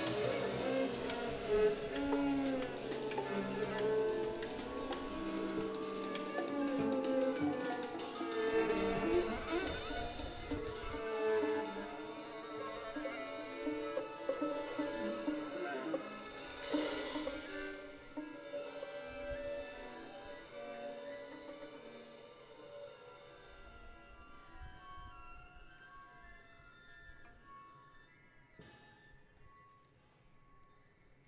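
Live chamber ensemble of bowed strings, vibraphone and drum kit playing, dense at first with drum strokes under the strings. About two-thirds through comes a short cymbal swell, after which the music thins out and fades to soft, sustained high notes.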